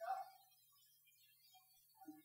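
Near silence: room tone with a faint low hum, and a brief faint voice at the very start.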